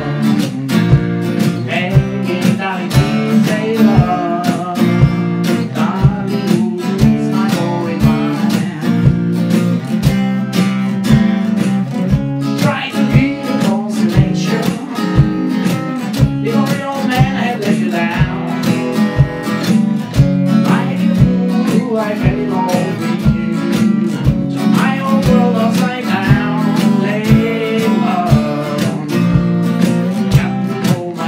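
Acoustic guitar strummed and picked in a steady groove, over a foot-played percussion thump that keeps a regular beat about twice a second.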